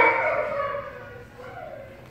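A dog whining, a high drawn-out sound that fades away over about a second.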